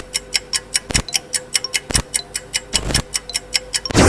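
Countdown-timer sound effect: rapid, even ticking, several ticks a second, with a heavier thump about once a second over a faint steady tone. A falling swoosh cuts in at the very end.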